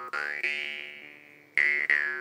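Handmade Agishjalm D2 drymba (jaw harp) plucked a few times: each twang rings and fades, with a bright overtone sweeping upward as the mouth shape changes.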